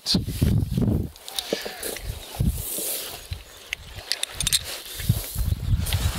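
Handling a lead shotline weight on a pebble beach: irregular scuffs and crunches of gravel underfoot, and a few sharp clicks of the weight's metal snap and swivel about two-thirds of the way in. Low rumble runs underneath.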